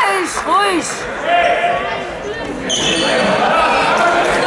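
A handball bounced on a sports-hall floor, mixed with the squeak of players' shoes and shouted calls, all echoing in the hall.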